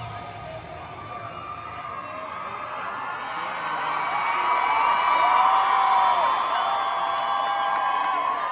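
Arena crowd cheering, growing louder over the first few seconds, with many individual fans whooping and screaming over the roar.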